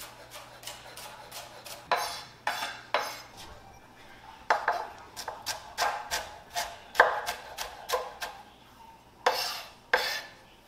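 Knife chopping on a cutting board in uneven strokes, a few knocks a second, with several louder knocks and some clatter of kitchenware.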